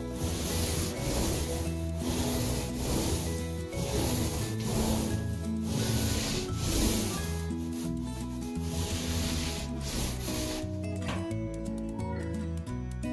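Paint roller rolling back and forth on drywall, one noisy stroke about every second, fading out near the end; background music plays underneath.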